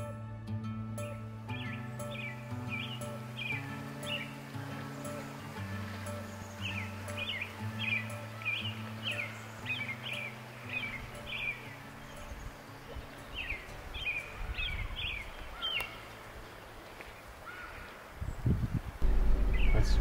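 A songbird calling in phrases of short, quick, downward-sliding chirps, over soft background music whose low sustained notes fade out about two-thirds of the way through. A brief low rumble comes near the end.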